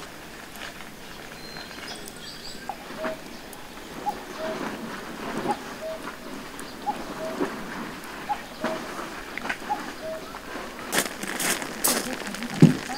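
Steady rain falling on foliage and gravel, with scattered drips. Short animal calls of about the same pitch repeat every second or so, and a few sharp clicks come near the end.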